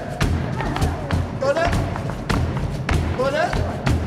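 Live flamenco-style music with a rapid run of sharp percussive stamps and knocks. A voice call glides up in pitch, repeating about every second and a half to two seconds.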